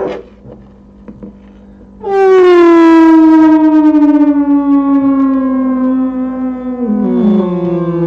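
Distorted feedback tone from a small desktop speaker, picked up by a contact microphone and run through a Boss DS-1 distortion pedal. After about two quiet seconds with a few faint clicks, a loud siren-like tone starts suddenly and slowly slides down in pitch, dropping a step lower near the end.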